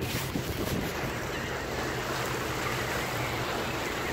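Wind on the microphone over water washing against jetty rocks, a steady noisy rush with a faint low hum beneath it.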